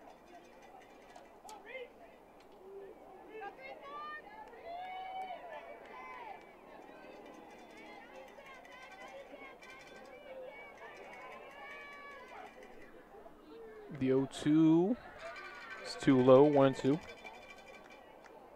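Faint crowd chatter from the stands at a softball game, then two loud voiced shouts close to the microphone near the end, about two seconds apart.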